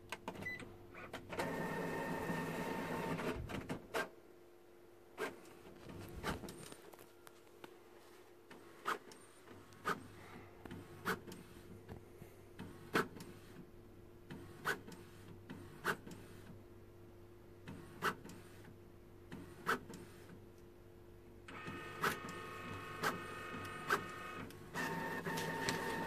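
Epson WP-4545 inkjet printer running a copy job at maximum density: a steady motor whir for about two seconds at the start, then a long run of sharp clicks a second or two apart as it prints, and another motor whir near the end as the page comes out. The repaired printer is working normally, printing perfectly.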